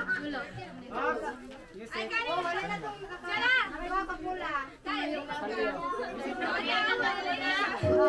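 A crowd of children and adults chattering and calling out at once, many voices overlapping, with no words standing out.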